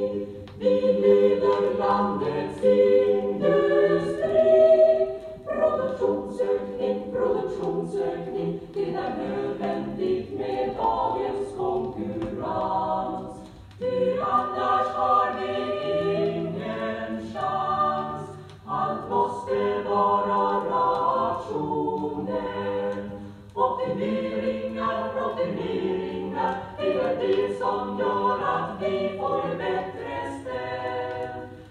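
A choir singing unaccompanied, in phrases with short breaks between them.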